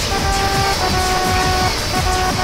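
Cartoon trumpet toots: a brassy horn tone held in two long notes, the second a little lower, over a heavy, distorted low rumble.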